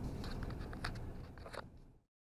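Low cabin rumble of a Ram 2500 Cummins diesel pickup on the move, fading out, with a few light clicks and scrapes of a hand handling the dash camera.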